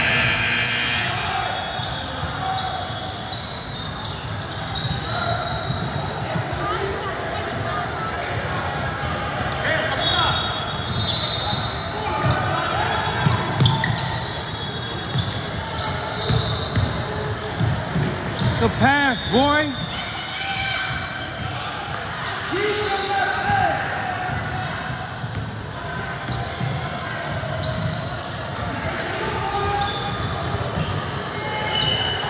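A basketball being dribbled and bouncing on a hardwood gym floor, with voices calling out, all echoing in a large hall. A short run of sneaker squeaks comes about two-thirds of the way through.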